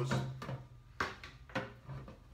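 A few short knocks and taps as a garden hose is handled and lowered into a clear plastic tub of water, the sharpest about a second in and another soon after.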